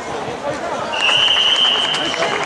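Referee's whistle: one long, steady blast starting about halfway through, over background crowd chatter.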